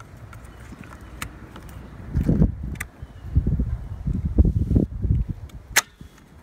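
A few sharp plastic clicks as an outboard's primer lever assembly is wiggled loose from the lower cowl by hand. From about two seconds in, low, irregular rumbling and thumps.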